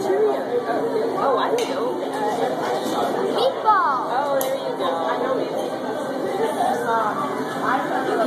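Indistinct chatter of many overlapping voices in a busy restaurant dining room, with no single speaker standing out.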